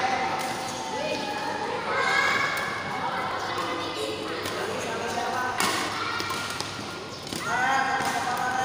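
Badminton rally sounds: racket hits on the shuttlecock and players' footsteps on the court, with one sharp strike standing out about five and a half seconds in. Voices of players and onlookers carry in the background.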